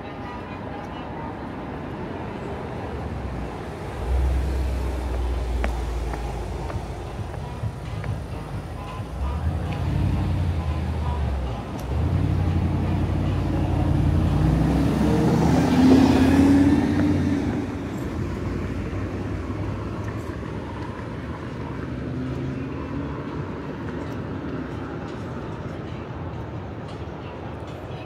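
Street traffic: a low engine rumble that builds as a motor vehicle passes close by, loudest about fifteen to seventeen seconds in, then settles back to a steadier background hum.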